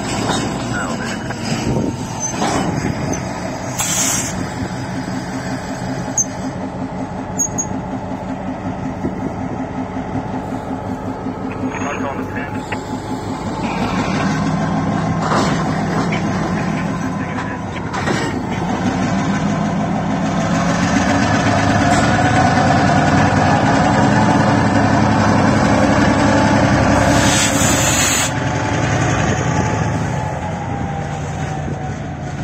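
EMD MP15 switcher locomotive's diesel engine running as it moves a boxcar past at close range, louder in the second half as the engine works harder, with a whine rising in pitch. A few short sharp noises break in along the way.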